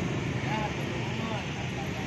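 Faint, brief speech over a steady low background rumble.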